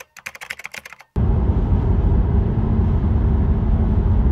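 A quick run of keyboard-typing clicks, about ten in a second and a half, stops abruptly. About a second in, loud, steady road noise of a car driving on a highway cuts in, low and rumbling, with a faint steady hum.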